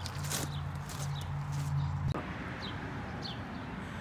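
Outdoor background: footsteps on gravel over a low steady hum that cuts off abruptly about halfway through, with a few short, high bird chirps.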